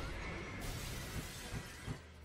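Glass-shattering sound effect in an animated disc-menu transition: a dense spray of breaking glass fills the high end from about half a second in and stops at the end, over low menu music.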